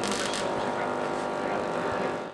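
Small Tesla coil's spark discharge buzzing steadily as purple arcs jump from its top terminal: a loud, even buzz with many overtones over a crackling hiss.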